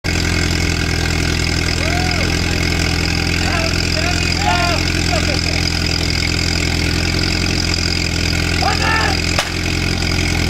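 Portable fire pump's engine running steadily at idle. A short sharp click with a brief drop in the engine sound comes about nine and a half seconds in.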